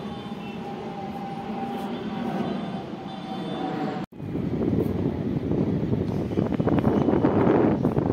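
Steady rumbling noise with faint, slightly falling high whining tones; it cuts off abruptly about four seconds in, and a louder, rougher rushing noise follows and grows toward the end.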